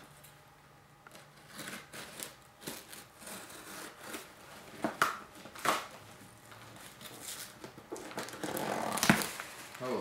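Cardboard shipping box being opened by hand: packing tape and paper tearing and crinkling in short scattered rips and scrapes, with sharper rips about five seconds in and the loudest one near the end.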